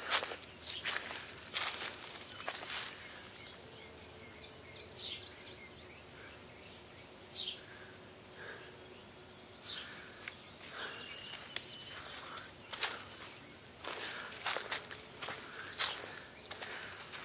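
Footsteps on a leaf-littered forest trail, a run of steps at the start and another near the end, with a quieter stretch between where a few faint chirps are heard over a steady faint high tone.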